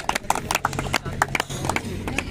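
Hand claps from a few people, sharp and irregular, several a second, with voices in the background.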